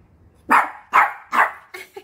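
Small poodle barking three times in quick succession, about half a second apart, with a few softer yips after. The owner takes the barks for the dog being angry.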